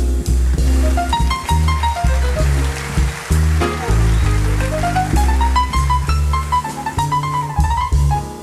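Jazz piano trio playing an instrumental break: a piano line runs down and climbs back up over a steady bass and drums.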